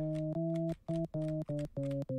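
LMMS TripleOscillator software synth playing a string of about six short single notes at different pitches, each held for a fraction of a second with brief gaps between them. The notes are triggered from a computer keyboard's letter keys.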